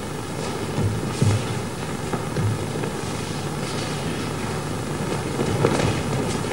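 A few soft, low thuds of feet and bodies landing on a mat as aikido partners throw and take falls, over a steady hiss and rumble.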